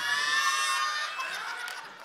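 A high-pitched vocal cry, held for about a second and then fading, over studio audience noise.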